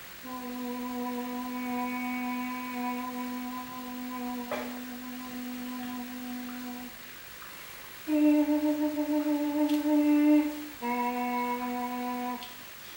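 A woman's voice singing long held notes on open vowels. One steady note lasts about six and a half seconds. After a short pause a slightly higher, louder note with a fast pulsing waver follows for nearly three seconds, and near the end the voice returns to the first pitch.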